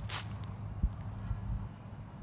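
Low outdoor background rumble with a brief click just after the start and a soft thump about a second in.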